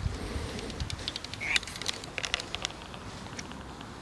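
Light clicks and taps from a small, freshly caught F1 carp and pole tackle being swung in and handled, with one short rising chirp about one and a half seconds in.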